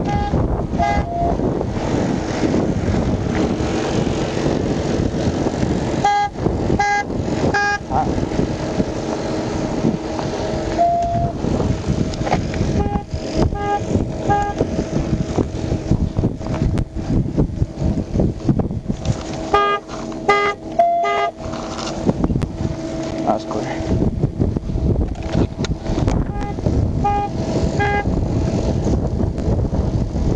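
Steady loud rushing noise with a constant low hum, broken four times by quick runs of short, high electronic beeps.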